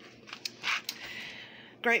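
Groceries being handled and shifted: soft rustling of packaging with a few light clicks.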